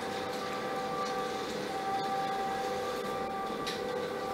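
Electric motors running steadily with a humming whine: a motorized projector screen rolling up into its casing while motorized curtains draw open. A few faint ticks sound over the hum.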